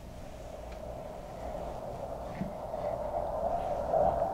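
Milky popsicle mixture being poured from a plastic pitcher into plastic popsicle molds: a steady stream of liquid noise that grows gradually louder.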